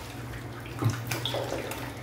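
Faucet water running into a bathroom sink and splashing as a wet dog is washed by hand, with one short thump a little under a second in.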